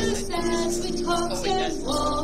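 A woman singing a song with held notes over instrumental accompaniment.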